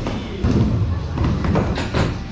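Skateboard wheels rolling on the wooden surface of a skate bowl, a steady low rumble. There are two sharp thuds of the board on the wood, about half a second in and near the end.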